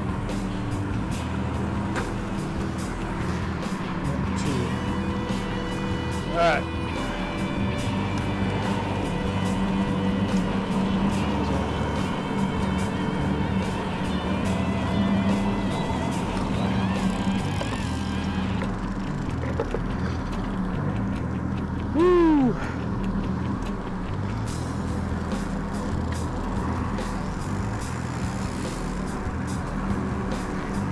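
Steady low hum of a boat's outboard engines, mixed with background music and indistinct voices. Two brief, loud falling squeals cut through, about a fifth of the way in and again about two-thirds through.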